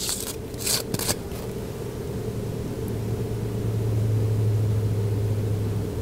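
A steady low hum that grows louder in the second half, with a few short clicks in the first second.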